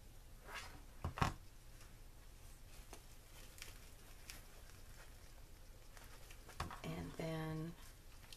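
Quiet handling of fabric and a hot glue gun: soft rustling of cloth with a few sharp knocks, the loudest just after a second in. Near the end a person gives a short hummed "mm".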